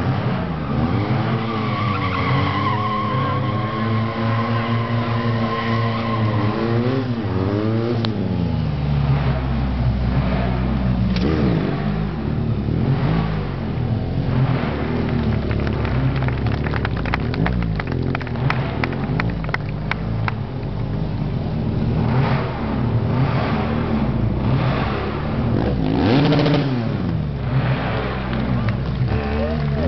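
Stunt motorcycle's engine revving hard, its pitch rising and falling again and again as the rider works the throttle through tricks. A stretch of rapid crackling clicks comes in the middle.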